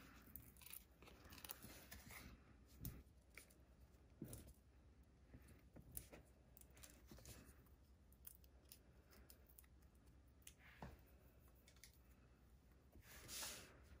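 Faint paper-craft handling: small foam adhesive dimensionals peeled from their sheet and pressed onto a die-cut paper feather. It comes as a few soft ticks and rustles scattered over near silence.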